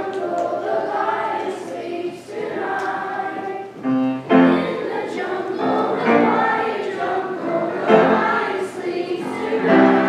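Children's school choir singing with upright piano accompaniment, the singing growing louder about four seconds in.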